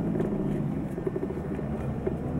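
Tour bus engine and road noise heard from inside the cabin while driving: a steady low drone.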